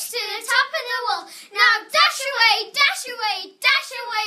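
A child's high voice reciting rhyming verse aloud, in quick phrases with brief pauses between them.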